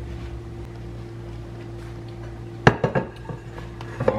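A ceramic plate set down on a kitchen counter: one sharp clink about two and a half seconds in, then a few lighter knocks, over a steady low hum.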